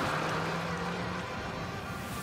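Car driving through loose dirt: a steady low engine tone under a rushing noise of wheels churning up dust and grit. The engine tone drops away a little past halfway while the rushing noise goes on.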